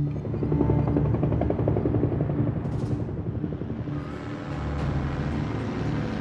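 Helicopter rotor chop, with music playing alongside.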